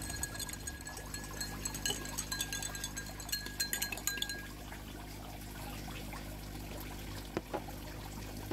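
A metal spoon stirring salt into a glass of water, clinking again and again against the glass so that it rings, for about the first four seconds. After that only a steady low hum remains.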